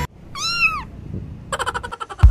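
A domestic cat meowing once: a single short meow that rises and then falls in pitch. Music starts up again in the last half second.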